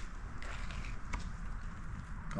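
Faint scraping with a few light clicks as a blade picks up thickened epoxy filler from a mixing board.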